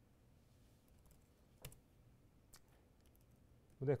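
A few scattered, faint computer keyboard keystrokes, the clearest about a second and a half in.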